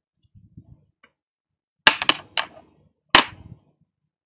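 Handling noise: a quick cluster of four sharp knocks and clicks about two seconds in, then one more a second later.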